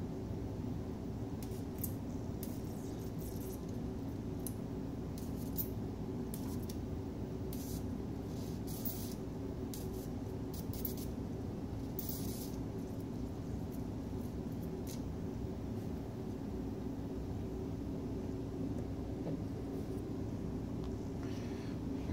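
Small classroom Tesla coil running with a toroid fitted, its arc to a hand-held light bulb giving short, irregular bursts of high hiss and crackle over a steady low hum.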